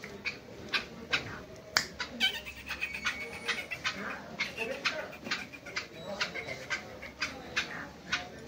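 Caged black francolin calling: a run of short, harsh notes, about two a second, with a longer drawn-out note a couple of seconds in.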